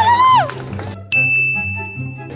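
A single bright ding sound effect strikes about a second in and rings on as one steady tone for about a second, over a low background music bed. A voice laughing trails off just before it.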